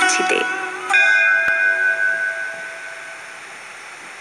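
A single bell-like chime struck about a second in, ringing with several steady tones and fading away over the next two or three seconds.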